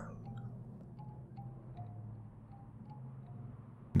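Quiet ambient background music: a low steady drone with sparse chime-like notes sounding one at a time at different pitches.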